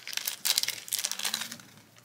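Shiny black wrapper crinkling as fingers peel it off a small enamel pin. It is a quick run of crackles that thins out near the end.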